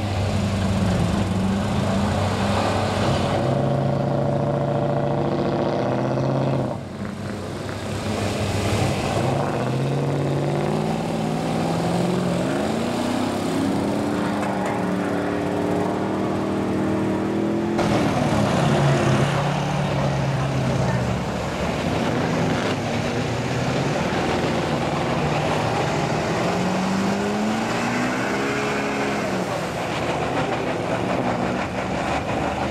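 Pickup truck engines revving under load while driving through deep mud, the pitch rising and falling with the throttle. The sound changes abruptly twice, about seven seconds in and again around eighteen seconds, where the footage cuts to another run.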